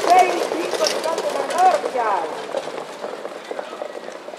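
A raised voice calling out for about two seconds, then fading into quieter open-air noise with faint light ticks.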